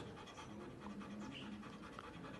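Belgian Malinois panting faintly and steadily.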